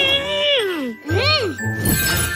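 A cartoon child's voice gives a long, falling wordless sound and then a short rising-and-falling one, over children's background music. A high tinkling magic chime sets in near the end as ice is conjured.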